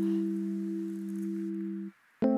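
Soundtrack music: a low held chord of steady pure tones that sustains without change, then cuts off abruptly near the end.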